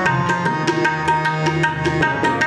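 Harmonium holding sustained reed tones over a tabla pattern of crisp strokes, about four to five a second, in an instrumental passage of Sikh shabad kirtan.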